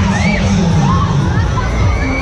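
Riders screaming on a swinging giant pendulum ride: several rising-and-falling shrieks as the arm swings, over steady loud fairground music.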